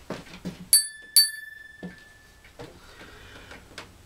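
A small bell on the Bellowphone, a homemade one-man-band instrument, dinged twice about half a second apart, the second ring dying away over about a second and a half.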